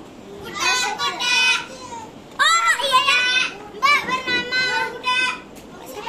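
Several young children talking and calling out over one another in high voices during pretend play, loudest about two and a half seconds in.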